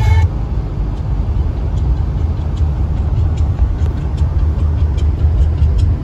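Inside a moving car: a steady low rumble of the tyres and engine on a wet road, with a few faint ticks.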